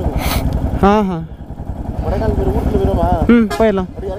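Yamaha R15's single-cylinder motorcycle engine running at low revs, with voices over it and a short hiss near the start.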